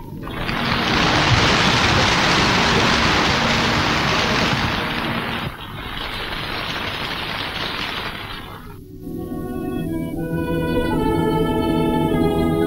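Large audience applauding for about nine seconds, a little quieter after the middle. Then the ensemble's instrumental introduction begins, with sustained organ-like chords from bayans (button accordions).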